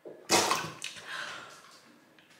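Water splashing and streaming back into a bowl of ice water as a face is pulled up out of it, a sudden loud splash about a third of a second in that trails off, with a gasping cry.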